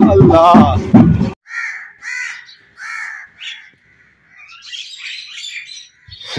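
A crow cawing about four times, the calls spaced roughly half a second apart, followed by fainter high-pitched bird chirps near the end. Before it, for the first second or so, loud voices and music that stop abruptly.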